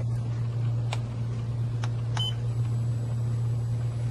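Steady low hum, with a couple of faint clicks about one and two seconds in and a short high beep just after two seconds: the start beep of the ART-L5 LED dental curing light as it is switched on.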